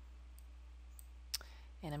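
A single sharp computer click about a second and a half in, with a couple of faint ticks before it, over a low steady hum.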